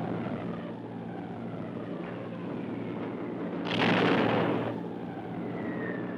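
Piston-engined bomber engines droning steadily while bombs drop. Several thin whistling tones glide downward, and a burst of rushing noise lasting about a second comes about four seconds in.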